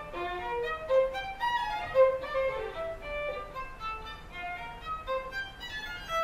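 Solo violin playing a contemporary piece with the bow: short, separate notes leaping widely in pitch, several a second, with sharper accents about one and two seconds in.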